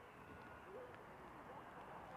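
Near silence: faint outdoor background, with a faint low call about a second in.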